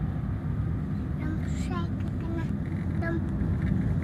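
Steady low road and engine noise inside a moving car's cabin, with a faint voice sounding a few short times from about a second in.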